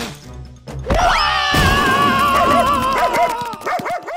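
Background music with a cartoon sound effect: a sudden hit about a second in, then a long, wavering cry that lasts about two and a half seconds and breaks off near the end.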